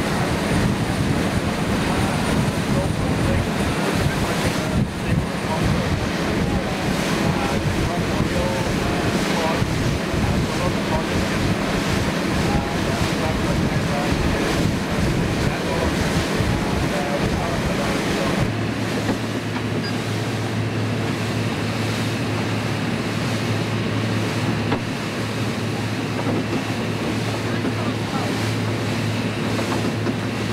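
A motor fishing boat running at speed: a steady engine drone under the rush of water along the hull and wind buffeting the microphone. About two-thirds of the way through, the drone shifts to a lower, steadier note and the wind rumble eases.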